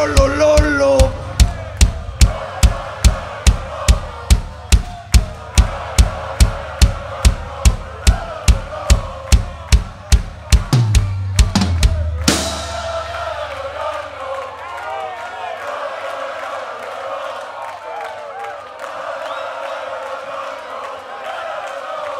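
Live rock band's drummer playing a steady beat on bass and snare drum, about two and a half hits a second. The song ends near the middle with a loud final crash and chord ringing out, followed by the audience cheering and shouting.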